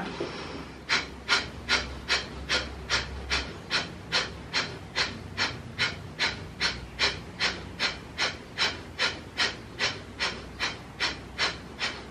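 A man doing breath of fire: a long, steady run of short, forceful rhythmic exhalations, about two and a half a second.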